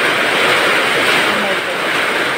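Heavy typhoon rain pouring down steadily, a loud even rushing hiss.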